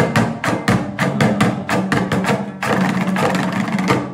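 Dambura, the two-stringed Afghan long-necked lute, strummed fast and rhythmically with sharp, percussive strokes, about six a second. Near the end the strokes run together into a continuous rapid strum.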